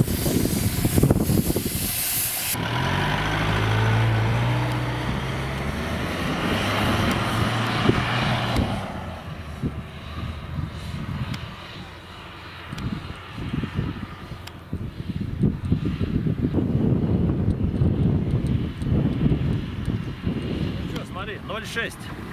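An SUV's engine revving hard under load as it pulls away and climbs a steep sand hill. The note holds high and rises slightly, then fades as the vehicle moves off. Wind buffets the microphone at the start and again in the second half.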